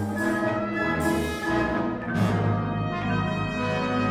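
Symphony orchestra playing sustained chords in a jazz-inflected marimba concerto, the brass to the fore, with the harmony shifting about a second and a half in and again just past two seconds.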